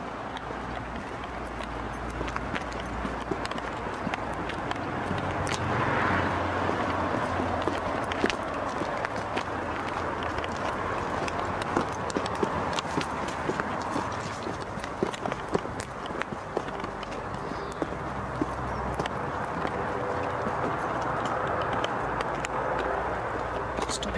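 Footsteps walking on a paved path with irregular clicks and knocks of a handheld camcorder being carried, over a steady hiss.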